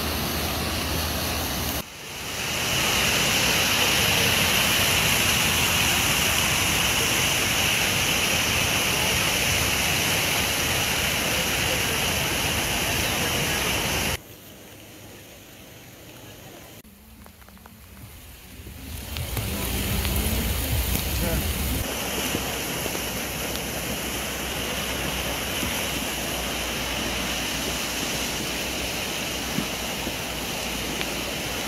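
Fast-running floodwater rushing and pouring, a loud, steady rush of water. It drops off sharply about halfway through and builds back up a few seconds later.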